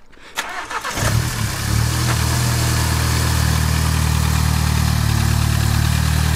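VW Golf GTI Mk7's 2.0 TSI four-cylinder turbo engine starting about a second in, just after its high-pressure fuel pump has been replaced with an upgraded one, then settling into a steady idle.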